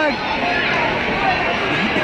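Background chatter and scattered voices of a crowd in a gymnasium, with a short laugh at the very start.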